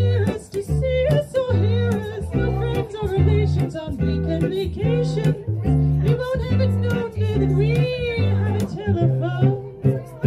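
Live acoustic vintage-style band: a woman sings with vibrato over a plucked double bass and an acoustic guitar. The bass plays steady, evenly spaced low notes under the melody.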